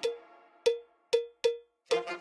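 Five sharp, unevenly spaced percussion hits in a music cue, each with a short ringing tone of the same pitch, like a cowbell or wood block.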